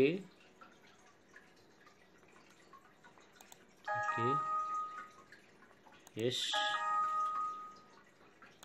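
Two computer alert chimes from laptop speakers, each a held chord of several steady tones. They sound as warning dialog boxes pop up during a PLC program download. The first comes about four seconds in and lasts about a second; the second starts past the six-second mark and runs longer.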